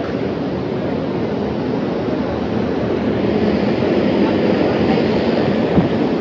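Steady, dense background noise of a busy indoor exhibition hall, with no distinct voices standing out. It swells slightly in the second half.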